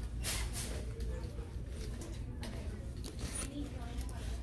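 Quiet retail-store ambience: faint, distant voices and a low hum, with light rustling as handbags on a rack are handled.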